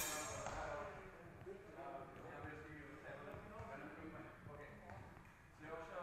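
A single sharp clash of steel training swords right at the start, ringing briefly, over a background of voices talking in the hall.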